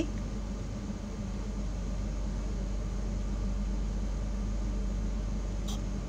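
Steady low hum with an even hiss of room noise and no voice; a brief faint click near the end.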